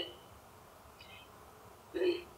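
A quiet pause in speech: a low, steady hiss of call-line room tone, with one faint, brief high-pitched sound about a second in.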